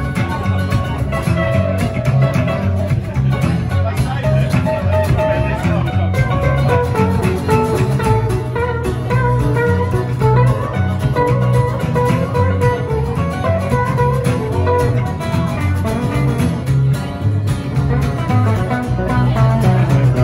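A live rock 'n' roll band plays on without a break: strummed acoustic guitar, electric guitar and a plucked upright double bass carrying a strong bass line.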